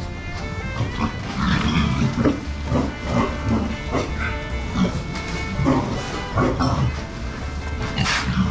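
A group of Berkshire (kurobuta) fattening pigs grunting and oinking in short, irregular calls, over background music that runs throughout.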